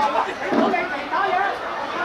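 Several people's voices overlapping in chatter and calls, with no one voice clear enough to make out words.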